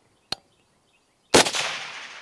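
A single suppressed shot from a DRD Paratus .308 Winchester takedown rifle about a second and a half in, sharp at the start and trailing off in a long echo. A brief faint click comes just before it.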